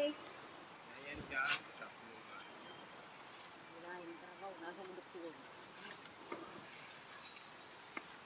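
Steady high-pitched drone of insects singing. Faint distant voices come in about halfway through.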